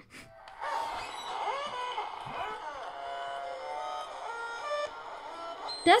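Music from the littleBits app's tutorial video playing through a phone's small speaker, a series of held notes stepping in pitch, with a voice over it in places.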